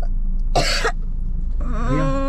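A woman coughs once, a short harsh cough about half a second in, then starts a long wavering moan near the end. The cough is put on for a faked coughing-up-blood prank. A steady low hum of the car cabin lies underneath.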